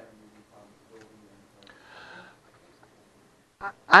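Faint, distant voices talking quietly in a few short phrases. Near the end a man's voice starts close to the microphone, much louder.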